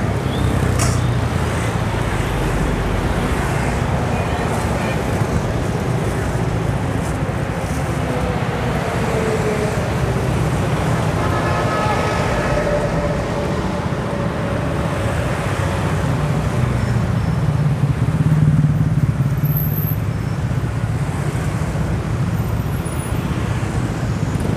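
Busy city street traffic, mostly motorbikes and cars passing in a continuous low rumble, with one vehicle passing louder about three-quarters of the way through.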